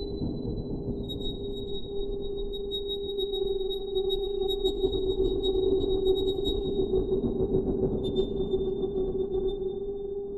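Mutable Instruments modular synthesizer music: a steady low drone is held throughout, with a thin high tone above it that steps slightly lower about a second in and again near the end. Sparse faint high ticks and a grainy low texture swell a little in the middle.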